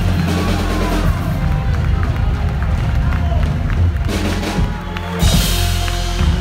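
Live rock band playing loud: drum kit, bass and electric guitar, with crowd noise under it. A burst of cymbals comes about five seconds in.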